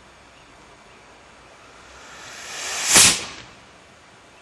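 Experimental 54 mm solid-propellant rocket motor firing on a static test stand at low Kn. A rushing hiss builds for about a second, peaks sharply about three seconds in, then dies away quickly as the motor burns out.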